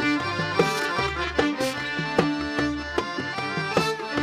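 Instrumental introduction of a Sudanese song played by a live band: sustained melodic lines over a busy pattern of percussion strikes, before the singer comes in.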